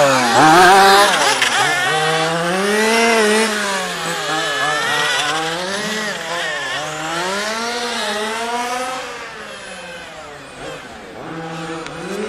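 Small two-stroke engine of a radio-controlled race car, revving up and down over and over as it accelerates and lifts off around the track. The sound dies down for a couple of seconds near the end, then rises again.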